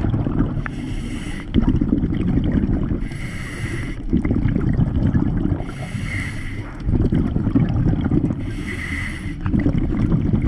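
Scuba diver breathing through a regulator underwater, in a regular cycle about every three seconds: a short hiss of the regulator on each breath in, then a long bubbling rumble of exhaled air.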